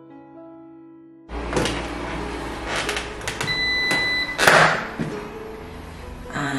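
Soft background music, then clicks and rustling as the Xiaomi Mi Smart Air Fryer is plugged in, a single steady electronic beep of under a second from the fryer about three and a half seconds in, and a loud thump right after it.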